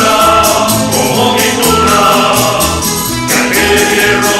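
Spanish estudiantina song: a chorus of voices singing the melody over strummed guitars and other plucked string instruments, with a steady strummed beat.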